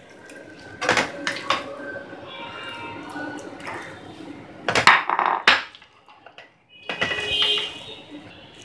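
A plastic spoon scraping and knocking against a pan and a glass baking dish as cooked vegetables are spooned across. There are several sharp knocks, and a brief ringing follows some of them.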